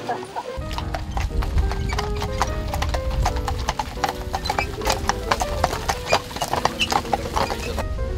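Hooves of grey Kladruber carriage horses clip-clopping on a gravel track, many hoofbeats overlapping as a line of carriages passes, over music. The hoofbeats stop just before the end.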